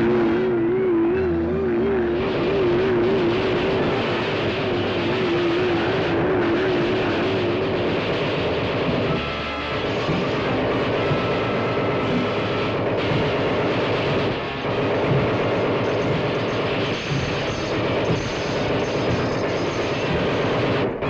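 Dramatic 1940s orchestral cartoon score mixed with mechanical sound effects for the flying and walking robot. A warbling held note runs through the first eight seconds. Police gunfire effects come in as the robot walks down the street.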